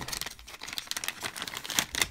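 Metallised anti-static bag crinkling as it is handled and the removed laptop hard drive is put into it: a dense run of small crackles.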